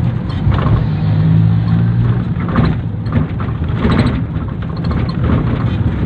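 Engine and road noise of a moving vehicle, a steady low rumble with a hum that is strongest in the first two seconds, and a few short rough bursts of noise in the middle.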